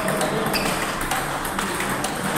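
Table tennis balls clicking off paddles and table tops in rallies, a quick irregular run of sharp clicks, some with a brief high ring, from more than one table.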